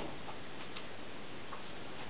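Steady background hiss with a few faint, short ticks scattered through it.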